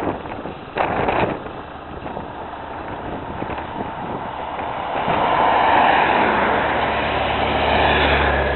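Police escort motorcycles and a police car driving past at speed. Their engine and tyre noise swells to a peak about six seconds in, then eases off.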